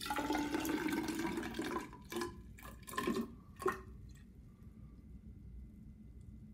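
Water poured into a graduated measuring cylinder: a steady stream for about two seconds, then three short splashes as the last few millilitres are topped up to the measured volume.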